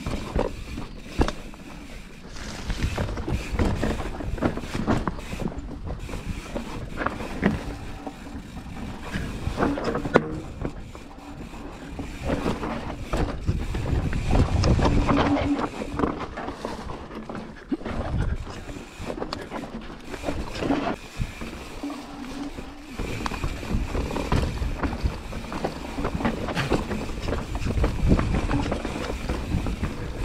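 Mountain bike descending a rocky, technical trail: tyres rumbling over dirt and stone, with frequent knocks and rattles from the bike as the wheels hit rocks, and wind on the microphone.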